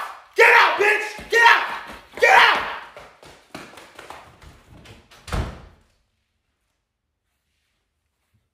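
A person's voice in excited bursts for the first few seconds, then a few light knocks and one heavy thump about five seconds in, after which the sound cuts off.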